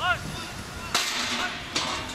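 A short, high shouted call from a player on the pitch, then a sharp crack about a second in, typical of a football being struck hard, and a smaller crack near the end.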